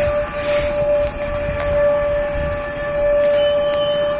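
A steady high-pitched metallic squeal from the running gear of an arriving passenger train as it slows, one held tone over the low rumble of the rolling carriages.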